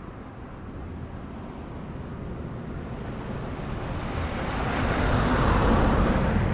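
A Nissan Navara NP300 driving up a gravel road and past, its engine and tyres on the gravel growing steadily louder, loudest as it passes near the end.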